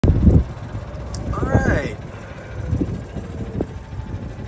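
Steady low rumble of a golf cart in motion, with wind buffeting the microphone, loudest in the first half second.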